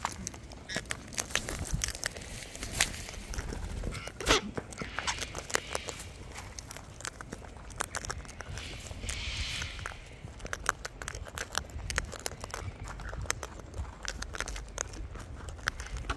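Sulphur-crested cockatoos husking and crunching seeds. Their beaks give irregular sharp cracks and clicks, with rustling in the seed trays.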